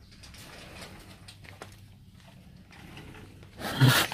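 Faint rustling, then near the end a sudden loud vocalization from a tiger at very close range.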